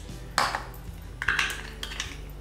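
Plastic measuring cups clacking against each other as a nested set is pulled apart: one sharp clack about half a second in, then a few quicker clicks near the end.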